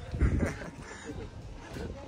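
Brief faint voices in the first half second, then low, steady outdoor background noise.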